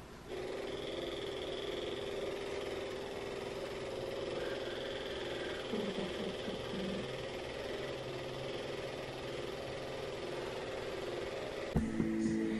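Handheld percussion massage gun running steadily, a constant motor hum, pressed against a person's lower back. The hum wavers briefly about six seconds in.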